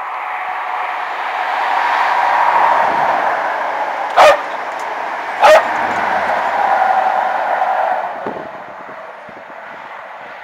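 A passenger train going past, its noise swelling and then fading away, while a Parson Russell terrier barks twice, sharply and loudly, about a second apart midway through.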